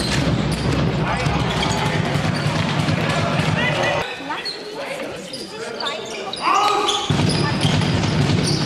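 A handball bouncing on a sports hall floor among players' shouts and crowd noise, with echoing knocks. About four seconds in the sound cuts to a quieter stretch with voices calling, and the louder hall noise returns near the end.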